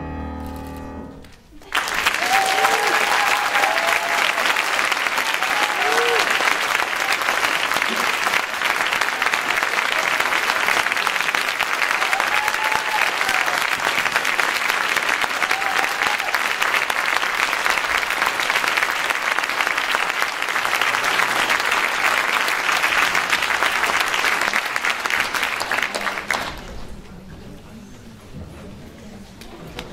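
A concert band's final chord dies away, and after a brief hush the audience breaks into loud, steady applause with scattered cheers and whoops. The applause fades out near the end.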